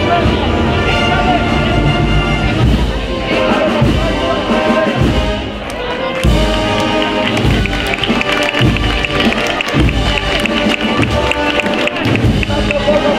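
Spanish banda de música (brass, woodwinds and drums) playing a processional march, with held chords over low drum beats; the music softens briefly about halfway through, then comes back in full.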